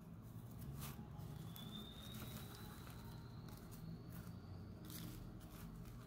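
Quiet room hum with faint handling sounds as fingers press a rolled paper spiral flower into a dab of glue, a couple of soft knocks among them. A faint thin whine rises slightly through the middle.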